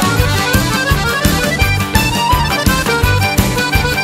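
Instrumental break of an up-tempo rhythm-and-blues band recording, with an accordion carrying the lead over drums keeping a steady, driving beat.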